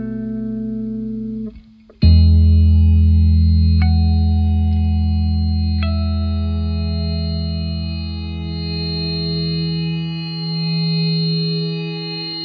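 Music: a guitar chord with a chorus effect, struck about two seconds in after a brief drop-out and left to ring and slowly fade, with a couple of single notes added over it.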